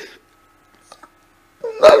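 A man's voice in emotional prayer. A long held vocal sound trails off with a falling pitch at the start, then about a second and a half of pause, then another loud vocal outburst near the end.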